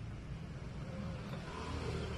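Steady low background rumble with an even hiss above it, like distant city traffic.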